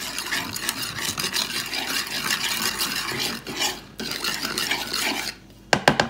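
Metal spoon stirring and scraping a spice-and-olive-oil mixture around a wooden bowl: a steady scratchy rasp that stops shortly before the end, followed by a couple of sharp clicks.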